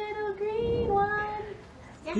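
A young girl's voice holding one sung note for about a second and a half, wavering slightly, then trailing off near the end.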